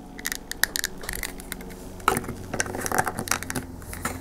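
Plastic action figure and its plastic display base being handled close up: a run of light clicks, taps and scrapes as the figure is fitted onto the base.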